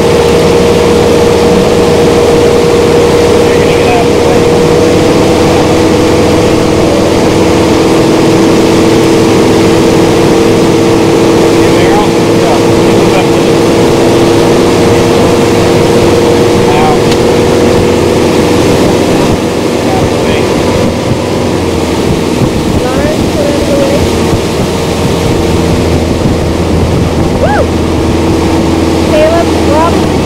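Ski boat's inboard engine running steadily at towing speed, heard from aboard, with the rush of the wake and wind on the microphone. The engine note eases a little about two-thirds of the way through.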